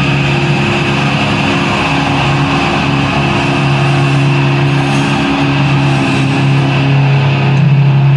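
Live amplified electric guitars holding a loud, steady low chord that drones on without a drumbeat.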